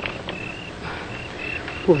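Crickets chirping, short high chirps at one steady pitch, a few times a second, over a faint background hiss.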